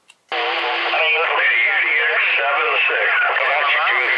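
A distant station's voice coming in over a CB radio's speaker, thin and mixed with static. The reply is barely intelligible. It cuts in about a third of a second in, after a click.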